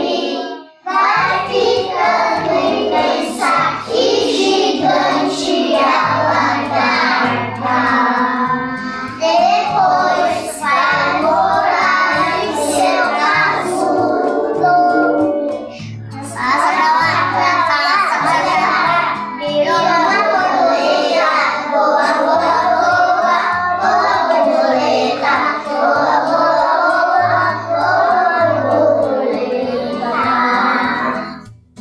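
Children singing a song over instrumental backing with a steady bass line, pausing briefly just after the start and again about halfway through.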